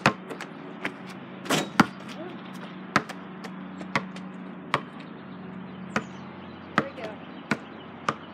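A basketball bouncing on a paved driveway: a string of sharp bounces at uneven intervals, the loudest about two seconds in, over a steady low hum.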